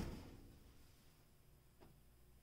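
Near silence: the fading end of a thump from the RC truck dropped onto its suspension dies away in the first half second, with one faint click near the end.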